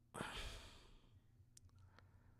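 A man's audible sigh, one breathy exhale of under a second, followed by a couple of faint clicks.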